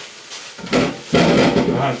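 Plastic bag rustling and small potatoes tumbling out of it into a steel saucepan, rattling against the pan, loudest from about a second in.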